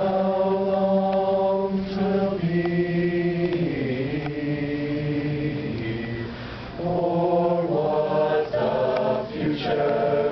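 A large chorus singing a hymn a cappella in harmony, holding long chords that move to new chords a few times.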